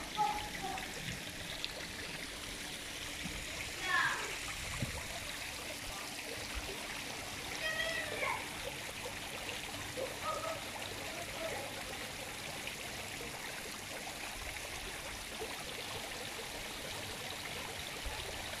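Fountain water splashing and trickling steadily, with brief distant voices about 4 and 8 seconds in.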